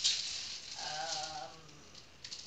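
Small clear plastic bag of diamond-painting drills crinkling as it is handled, loudest in the first half second.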